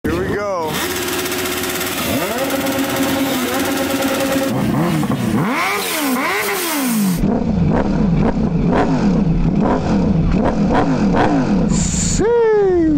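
Sportbike engines being revved in repeated throttle blips, each one's pitch rising and falling, with a quick run of short revs after a cut about seven seconds in and a bigger rev near the end. Voices of a crowd are heard under the engines.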